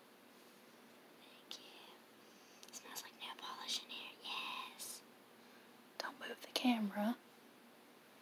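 Quiet whispered speech about three to five seconds in, then a short voiced utterance about six seconds in.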